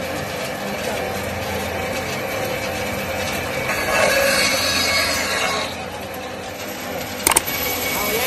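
Electric meat and bone bandsaw running steadily, its cutting sound growing louder and rougher for a second or two about four seconds in as a piece of beef is pushed through the blade. A short sharp click near the end.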